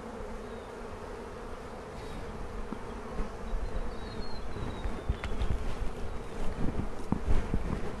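A colony of European honeybees buzzing steadily around an open hive and a lifted frame of comb. A few soft low thumps come in near the end.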